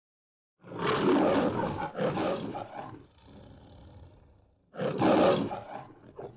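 The MGM lion roaring in the Metro-Goldwyn-Mayer logo: two loud roars back to back from about half a second in, a quieter low rumble, then a final roar near the end.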